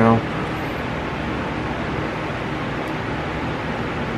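Steady, even background noise in a small room, a constant hiss with no distinct events, following a man's last spoken word at the very start.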